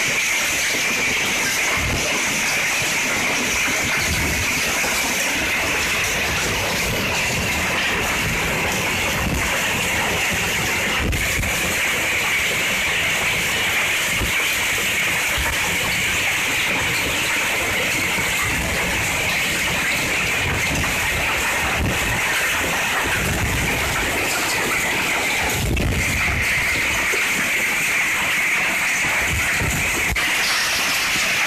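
Heavy rain pouring down in a steady, unbroken rush, with a few low thumps on the microphone.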